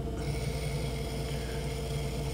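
Electric potter's wheel running with a steady low hum while a metal loop trimming tool shaves a ribbon of leather-hard clay off the spinning cylinder, a faint steady scraping that starts a moment in.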